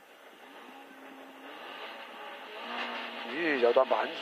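Race car's engine running at idle, heard from inside the cabin, quiet at first and building in level; a voice speaks near the end.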